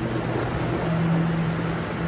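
Steady machine hum over a rushing air noise, typical of cleanroom ventilation and running equipment; the low hum tone moves a little higher in pitch about a second in.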